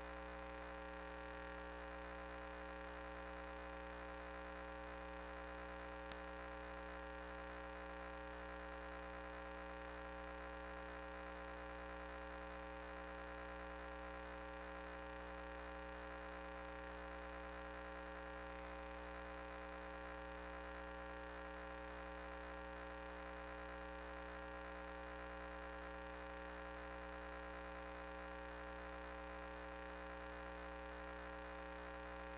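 Steady electrical hum with many overtones, faint and unchanging, picked up by the sewer-inspection camera's recording system. There is one sharp click about six seconds in.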